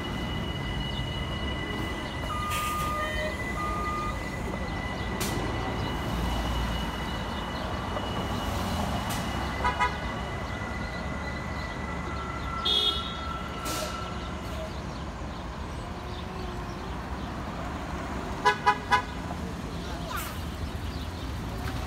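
City street traffic with buses pulling away and passing, a steady low engine rumble. Vehicle horn toots cut through it: two short toots about ten seconds in and three quick, louder toots near the end.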